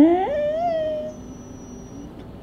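Bedlington Terrier's drawn-out vocal call, its attempt at a word of 'I love you': one pitched call that drops at its start, holds steady and ends about a second in.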